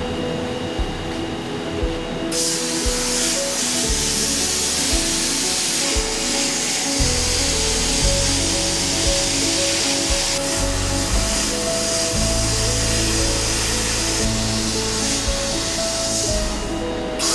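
Abrasive blast cabinet's air nozzle hissing as it blasts grit over a steel carving chisel, starting about two seconds in, heard under background music.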